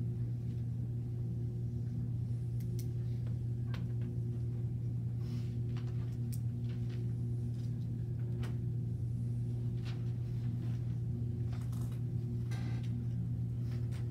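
Steady low room hum, with faint, scattered squeaks and taps of a marker on a whiteboard.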